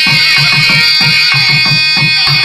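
Two nadaswarams playing an ornamented melody whose pitch bends and glides, over a steady beat of thavil drum strokes several times a second.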